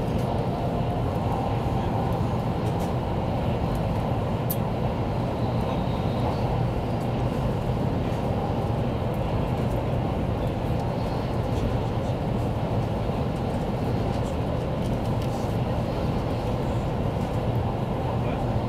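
Taiwan High Speed Rail 700T train running at high speed, heard from inside the passenger car: a steady rumble and rush of wheel, track and wind noise with a constant low hum underneath.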